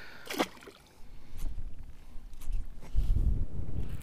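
Wind buffeting the microphone with a low rumble that grows stronger about three seconds in, over faint water lapping at a rocky shoreline.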